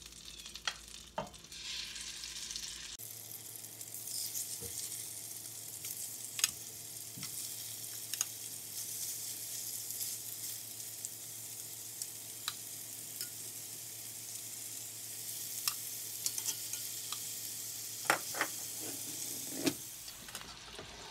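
Chicken tenderloins sizzling as they fry in hot butter and oil in a cast-iron skillet. The sizzle gets louder about three seconds in, with a few sharp clicks of metal tongs against the pan.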